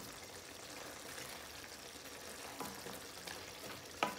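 Faint sizzle of a thick potato-and-cauliflower curry sauce simmering in an aluminium pan on a low gas flame, with a few soft knocks of a wooden spoon in the second half.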